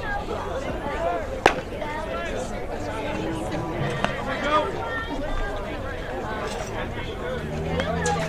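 Background chatter of many voices at a high school baseball game, players and spectators talking over one another. A single sharp crack, such as a ball or bat striking, stands out about one and a half seconds in.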